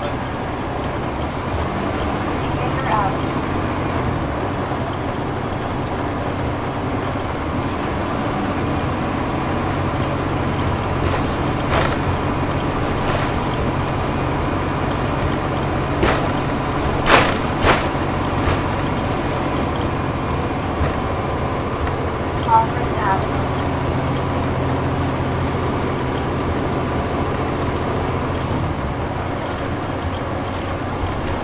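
Inside a 2010 NABI 40-SFW transit bus under way, with its Cummins ISL9 diesel engine running steadily under road and tyre noise. A few sharp clacks cut through, the loudest about 17 seconds in.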